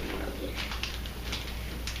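Faint rustling and a few light ticks of hands handling balloons and a packet on a tabletop, over a steady low hum.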